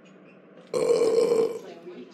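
One loud burp, a cartoon sound effect, starting about three quarters of a second in and lasting under a second before trailing off, over a faint low background hum.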